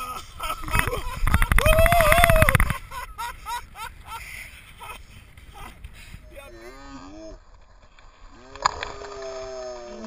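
A man's long, loud yell from the shock of ice water poured over him, held for over a second with a rush of noise behind it. Shorter shouts follow near the end.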